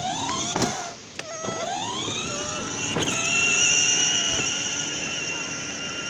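Battery-powered ride-on toy car's electric motor whining as it drives off. The whine rises about a second and a half in, then holds steady.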